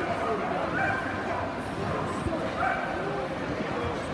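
Dogs yipping and barking several times over steady crowd chatter in a large, busy exhibition hall.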